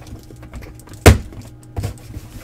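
Folding knife cutting the packing tape on a cardboard shipping case, with a loud thump on the box about a second in and a smaller one near the end.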